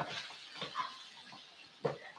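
Wooden spoon stirring a tomato-and-spice mixture in a non-stick frying pan: faint, irregular soft scraping with a few light knocks.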